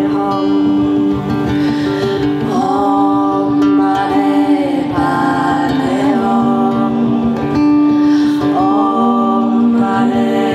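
Live song on acoustic guitar with a woman's singing voice over it, holding long notes that slide between pitches.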